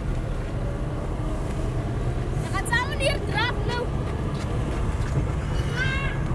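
Car engine and road noise heard from inside the cabin as the car drives slowly along a town street: a steady low rumble. A few short, high calls from outside cut in around the middle and again near the end.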